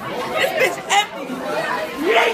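People's voices talking, with background chatter in a large hallway.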